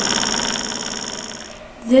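Simple reed-switch electric motor spinning a small propeller: a steady high-pitched buzzing whir that fades away and is gone shortly before the end.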